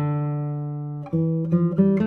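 Kazuo Sato Prestige 2022 classical guitar, spruce top with Madagascar rosewood back and sides, played fingerstyle: a chord rings out, a new chord is plucked about a second in, and a few quicker notes follow near the end.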